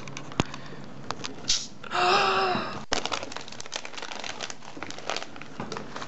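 Plastic snack bags crinkling and rustling in a stream of small clicks as packages are rummaged from a cardboard box, with a short hummed voice sound about two seconds in.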